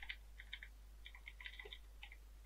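Computer keyboard being typed on: quick, uneven runs of faint, light key clicks. A steady low hum sits underneath.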